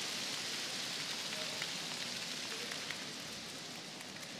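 Audience applause after a point in an arena, slowly dying away.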